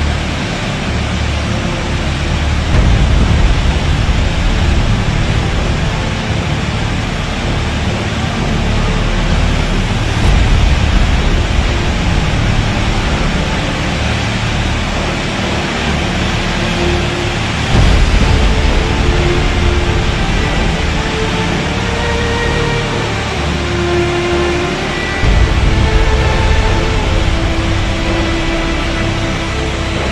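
Muddy floodwater pouring down a steep rocky channel: a loud, steady rush with heavy low rumble that swells about every seven or eight seconds. Faint background music with held notes runs underneath, clearer in the second half.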